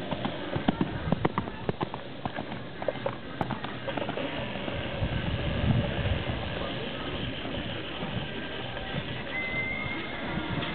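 Hoofbeats of a horse cantering on a sand arena, a quick run of thuds strongest over the first few seconds as it passes close, then fading as it moves away.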